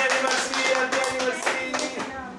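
Several people clapping their hands while voices sing a celebration song over the claps.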